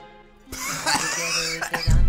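A man coughing hard over music, starting suddenly about half a second in, with a heavy low thump near the end.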